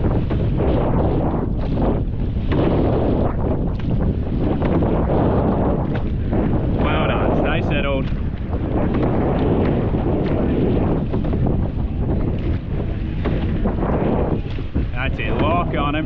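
Wind buffeting the microphone over the rush of water along the hull of a surf boat being rowed.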